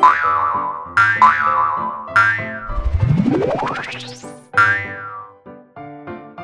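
Cartoon boing sound effects over playful children's background music: several short springy boings about a second apart, and a long rising whistle-like glide in the middle.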